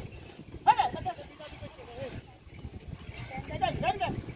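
A bullock-cart driver's short shouted calls urging his pair of bullocks on, once about a second in and again near the end, over a steady low rumble.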